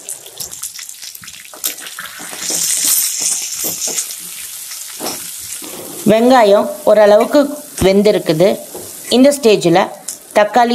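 Sliced onions and dried red chillies sizzling in hot oil in a stainless steel pan, stirred with a steel ladle that clinks and scrapes against the pan; the sizzle is strongest about three seconds in. A voice speaking in Tamil takes over for the last few seconds.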